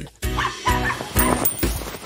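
A small dog barking a few short times over background music with a steady beat.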